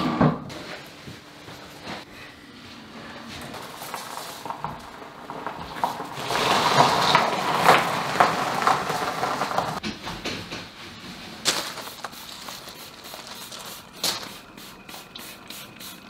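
A car being pushed by hand over a gravel driveway, its tyres rolling with a rustling, crunching noise that grows louder for a few seconds in the middle, followed by a couple of sharp knocks.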